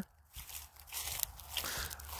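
Faint crunching footsteps through dry grass and leaves, with scattered small crackles.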